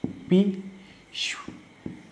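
A marker drawing on a whiteboard: one scratchy stroke about a second in that falls in pitch, then two light taps near the end, after a brief spoken syllable.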